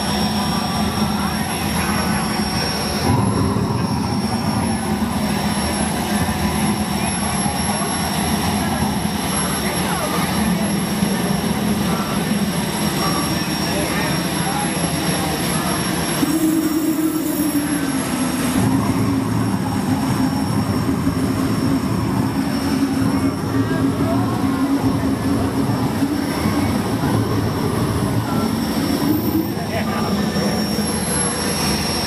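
Engine-like roar from a custom coffin trailer running steadily. About halfway through, a burst of flame shoots from it, and a tone comes in that slides down slightly and holds until near the end.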